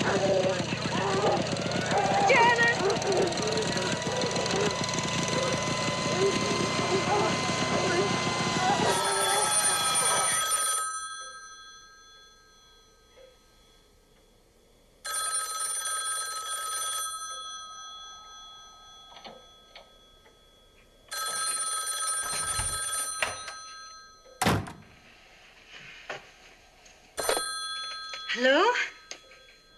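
A desk telephone's bell ringing in about two-second rings with roughly four-second gaps. The fourth ring is cut short as the receiver is picked up. Before the ringing, a loud stretch of noise with voices in it ends about ten seconds in, and there is one sharp knock between the third and fourth rings.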